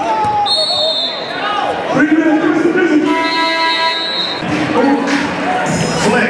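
Basketball game in a gymnasium: a ball bouncing on the hardwood court a few times, two high squealing tones about a second long, and voices and crowd noise in a large echoing hall.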